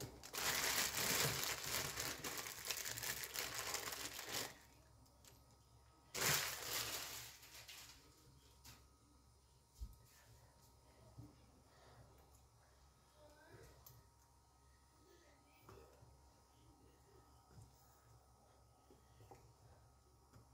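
Plastic bag crinkling and rustling for about four seconds, then again briefly about six seconds in, as dry meat is taken from it. After that there are only a few faint knocks of a wooden spoon in a steel pot.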